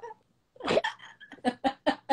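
A woman laughing hard in short, gasping bursts. The laughter starts about half a second in, after a brief pause.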